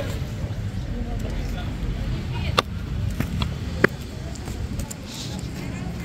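Outdoor ambience: a steady low rumble with faint voices in the background, and two sharp clicks in the middle, about a second apart.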